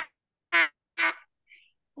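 A child's voice repeating a short syllable three times, about half a second apart: a hesitant 'my... my... my' at the start of a sentence.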